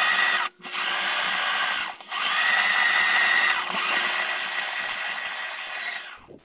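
Enabot EBO SE robot's wheel drive motors whirring as it drives across the floor, heard through its own built-in microphone. The whirr comes in three runs, with short pauses about half a second and two seconds in.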